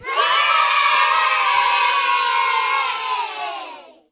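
A group of children's voices cheering together in one long call that falls slowly in pitch and fades out near the end, an edited-in sound effect.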